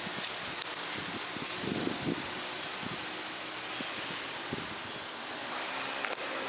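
Steady outdoor background noise: a hiss of wind and rustling leaves.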